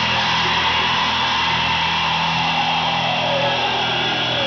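Metal band playing live, loud and dense: a noisy wash of distorted guitars and cymbals over held low notes, heard from within the crowd.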